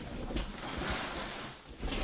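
Soft rustling and handling noise as a human-hair wig is pulled on over a bald head. It swells about half a second in and fades away near the end.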